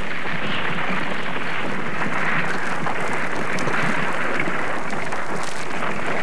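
Molten lava flow creeping under a rubbly crust of cooling rock, giving a steady, dense crackle of many small ticks.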